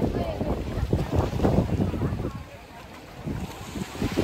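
Wind buffeting the microphone over indistinct voices of people around, easing into a lull a little past the middle.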